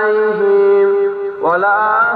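A man chanting in long drawn-out notes: one note held steady for about a second and a half, then a new phrase starting with a rising note near the end.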